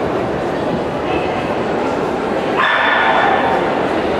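Dogs barking and yipping in a large indoor hall, over people talking. About two and a half seconds in, a steady high whine starts and holds.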